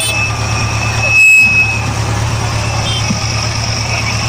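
Van engine idling close by, a steady low drone. A brief high tone cuts in about a second in.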